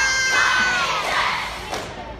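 Crowd cheering, with one long high-pitched scream that slides slightly down in pitch and stops a little past one second in. A short thud comes near the end.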